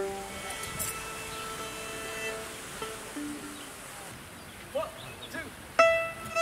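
A single plucked string note sounds and rings out, fading over about two seconds. Just before the end, violin and acoustic guitar start playing.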